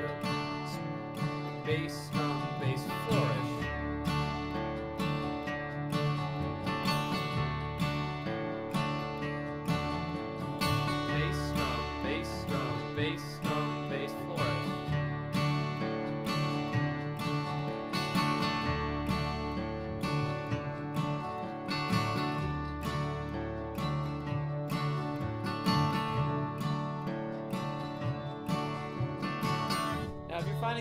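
Acoustic guitar playing bluegrass rhythm in the key of D: steady strumming over low bass notes, broken every few beats by a quick up-down-up flourish strum on the higher strings.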